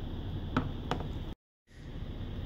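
Two light clicks of laptop parts being handled, about a third of a second apart, over a steady low room hum; the sound then cuts out completely for a moment.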